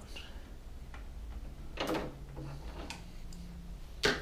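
Faint handling noise with a few light clicks as a screwdriver is handled, over a low steady hum.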